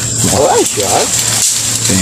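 Two short vocal sounds that rise and fall in pitch, in the first half, over a steady high-pitched whine.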